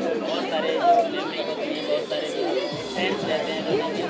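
Several people talking at once, overlapping voices of a crowd around the press microphones, with faint music in the background.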